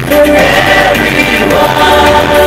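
A large group of voices singing together in harmony through a stage PA, holding long sung notes, with a low bass line underneath.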